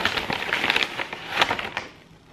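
A paper gift bag being opened: dense crackling and rustling of paper and packaging, which stops shortly before the end.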